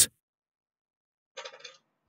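Silence, broken about one and a half seconds in by one faint, short noise lasting under half a second.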